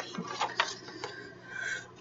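Paper pages of a ring-bound planner being turned, with light rustling and a few small clicks.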